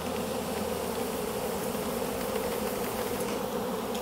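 A mass of honey bees buzzing steadily around an open hive, stirred up and active after being shaken out of a bucket.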